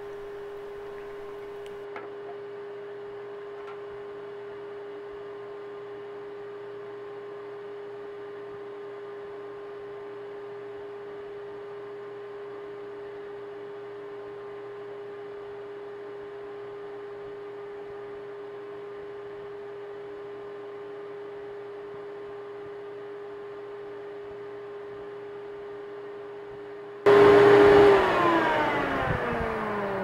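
A vacuum cleaner's motor runs with a steady hum while it pulls suction on a cracked PVC water line to draw primer into the crack. Near the end it suddenly gets much louder, then it is switched off and its whine falls in pitch as the motor spins down.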